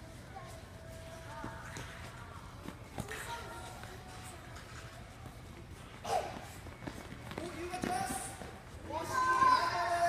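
Young children's high-pitched voices calling and shouting during an indoor futsal game, with a sharp knock about six seconds in, where the ball is kicked, and the loudest shouting near the end.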